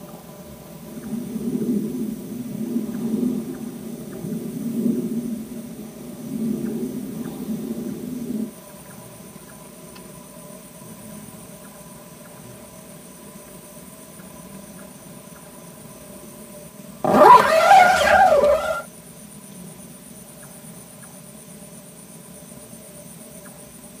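A sleeper snoring, four or five low swells over the first eight seconds. About seventeen seconds in comes a loud, wavering, voice-like sound that lasts under two seconds.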